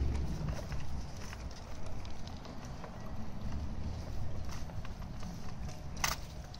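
A stroller rolling along a paved path: a steady low rumble from the wheels, with scattered light clicks and steps.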